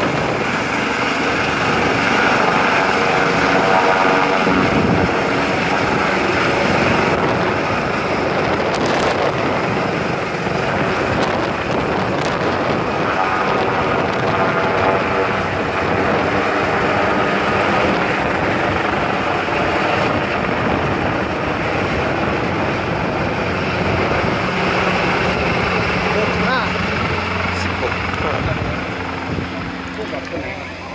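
AgustaWestland AW189 twin-turbine helicopter flying overhead just after lift-off: a loud, steady whine of turbines and beat of main rotor. It fades a little near the end as the helicopter moves away.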